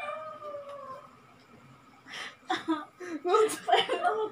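A long, high-pitched, slightly falling squeal of laughter for about the first second, then a short lull, then bursts of laughter and excited voices from about two seconds in.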